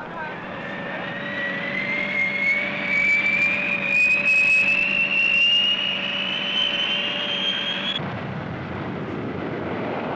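B-58 Hustler's General Electric J79 turbojet spooling up: a turbine whine that rises steadily in pitch for about eight seconds over a steady lower hum, then cuts off suddenly. A broader rushing jet noise builds near the end.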